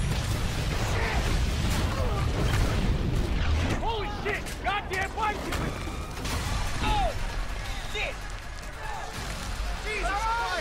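Street explosion: a sudden blast, then a long, deep rumble of falling debris. From about four seconds in, people cry out over it.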